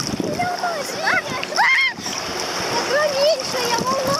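Sea water sloshing and splashing right at the microphone in small waves, with high voices calling out a few times over it, loudest a little under two seconds in.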